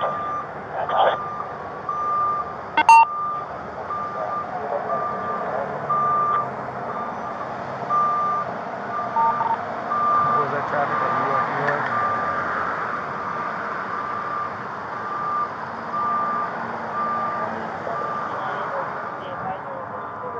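A vehicle's reversing alarm beeping steadily, one high beep about every second, stopping shortly before the end. A single sharp click sounds about three seconds in.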